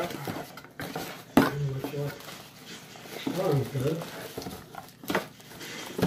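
Cardboard packaging being handled as a box is pulled out of a shipping carton: rustling and knocks, with a sharp knock about a second and a half in and another near the end.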